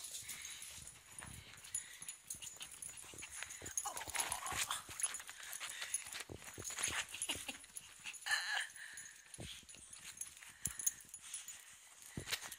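Dog making a few brief whining sounds while being petted, with close rustling and scratching of fur against the microphone.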